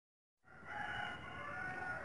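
A faint, drawn-out animal call in the background, starting about half a second in and holding a few steady pitches.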